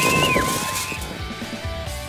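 Young children shouting and cheering, one high held shout fading out about a second in, then background music with a steady run of notes takes over.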